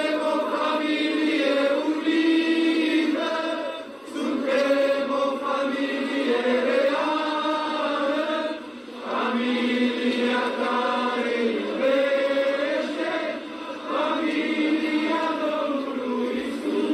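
Slow chant sung by a group of voices: long held notes in phrases of about two seconds each, with short breaths between phrases.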